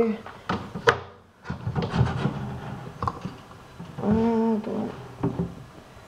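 Handling noise of a glass terrarium's clamp lamp and screen top: a sharp click about a second in, then irregular knocks and rattles.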